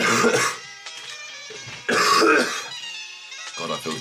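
A young man coughing twice, about two seconds apart, from a cold that he takes for freshers flu. Background music with sustained tones runs under the coughs.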